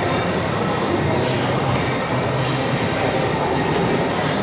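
Steady rumbling background noise of a large gym hall, even throughout with no distinct knocks or clanks.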